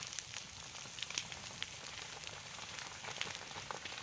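Burning scrub and undergrowth crackling faintly: scattered sharp pops and snaps over a low steady hiss.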